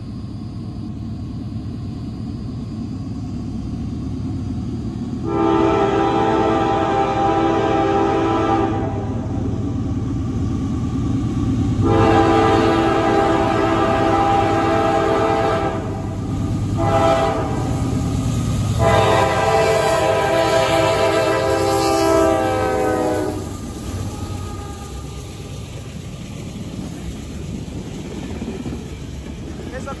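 Diesel freight locomotive's chime air horn sounding the grade-crossing signal: two long blasts, a short one and a final long one. Under it, the rumble of a fast-approaching empty coal train grows louder and carries on after the horn stops.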